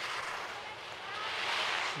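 Skis carving and scraping on snow through slalom turns: a steady hiss that grows louder over the second half.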